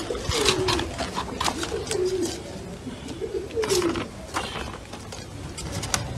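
A pigeon cooing: several low coos, each rising and falling in pitch, during the first four seconds. Short sharp noises come in between.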